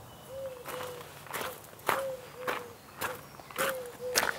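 Footsteps crunching on a gravel driveway, about two steps a second, six or so in all.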